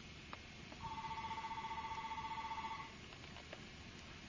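Telephone ringing: one electronic ring about two seconds long, two tones warbling rapidly, starting about a second in.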